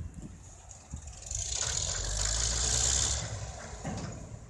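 An engine running, growing louder from about a second in and easing off near the end, with a low steady hum and a strong hiss over it.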